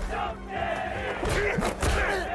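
Anime fight-scene audio: a crowd of young men shouting and jeering over background music, with a few sharp thuds near the end.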